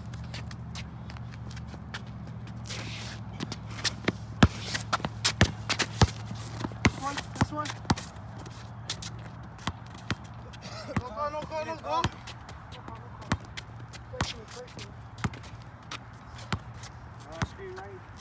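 Basketball dribbled on a concrete court: a long run of sharp, irregular bounces, with shoe scuffs and footsteps, the loudest bounces about four to seven seconds in. Brief shouts cut in twice.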